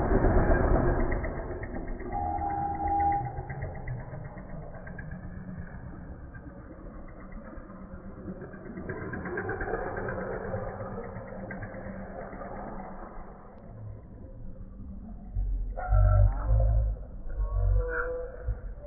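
Road traffic passing close: vehicle engines and tyre noise, loudest at the start as a vehicle goes by, then settling to a steady traffic hum. A vehicle horn sounds briefly about two seconds in, and a few loud low thuds come near the end.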